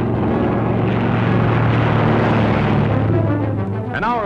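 Propeller aircraft engine drone, a dubbed-in sound effect, swelling to a peak about halfway through and then easing off, over background music.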